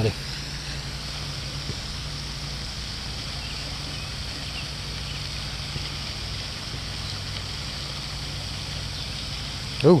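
Steady rushing hiss of a pond fountain aerator's spray, with a low steady hum beneath it.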